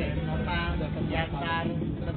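Car engine and road noise heard from inside the cabin as a steady low rumble, with a voice speaking briefly over it.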